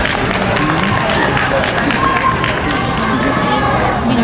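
Spectators and gymnasts chattering in a large hall, many overlapping voices with a few claps, and music faint underneath.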